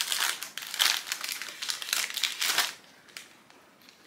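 Plastic packaging crinkling and rustling as a black wire shower shelf is pulled out of its wrapping and box, in quick crackly bursts that stop about three seconds in.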